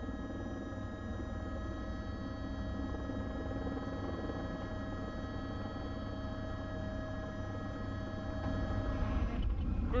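Steady, unchanging turbine-like whine over a low rumble, consistent with a helicopter in flight. It cuts off shortly before the end.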